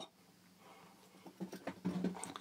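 A pet cat going crazy in the room: after a near-silent second, a quick run of faint knocks and scuffles.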